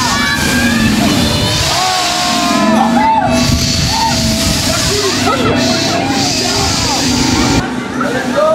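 Voices and music with a low rumbling noise underneath, as heard from a moving swing ride; the rumble cuts off suddenly near the end.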